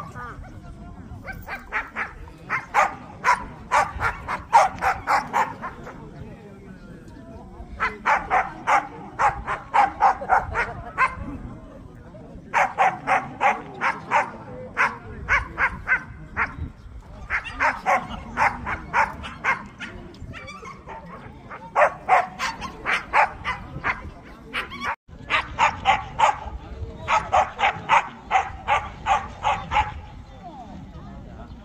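A dog barking in rapid runs of two to four seconds, about four or five sharp barks a second, with short pauses between the runs.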